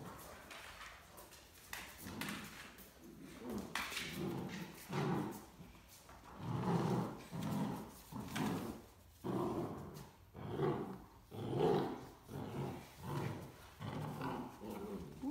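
Great Dane puppy growling in short, repeated bursts, a little more than one a second, while tugging and clamped onto a plush toy. A few scuffling clicks come in the first seconds before the growls start.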